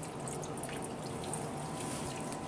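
Water trickling and dripping in a wet rock saw as its coolant water is being shut off, with a faint steady hum underneath.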